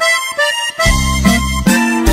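Opening bars of a norteño corrido: a reedy accordion melody, with a bass and bajo sexto rhythm coming in about a second in.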